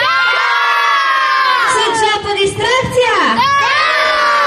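A crowd of children shouting "Da!" ("yes!") together in one long drawn-out yell that drops in pitch at its end, then more shouting and cheering from the group.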